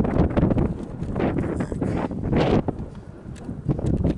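Wind buffeting the microphone: a low, uneven rushing noise that swells and eases, dropping back briefly about three seconds in.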